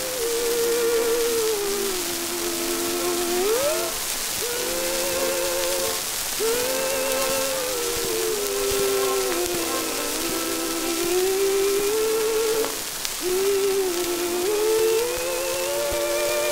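Acoustic-era 1919 Edison Diamond Disc recording of a female vocal trio with orchestra. Voices hold long notes in close harmony with a wide vibrato and slide between pitches, over a steady hiss from the disc surface.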